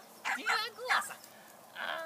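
Podengo Português puppy giving short, high-pitched yips in play, three in quick succession in the first second and another near the end.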